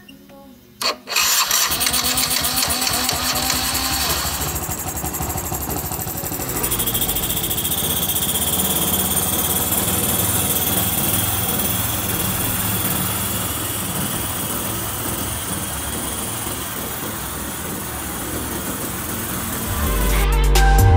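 Yamaha Cuxi 100 scooter's single-cylinder four-stroke engine starting about a second in, then running steadily. It now runs after its clogged, leaking carburetor has been cleaned.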